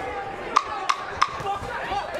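Ten-second warning: the timekeeper's wooden clapper struck three times on the ring apron, evenly, about a third of a second apart, each knock sharp with a short ring. Arena crowd noise runs beneath.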